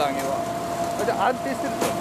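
A steady machine hum with one sharp click near the end.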